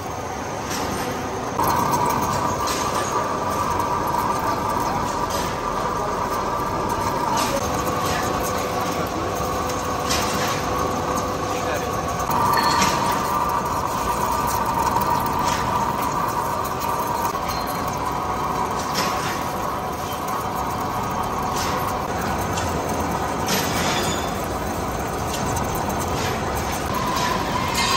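Vintage British vertical lathe turning a steel cylinder, its single-point tool cutting the outer diameter: a steady machine noise with a high cutting tone that comes in about a second and a half in and shifts pitch a few times, and occasional sharp clinks of metal chips.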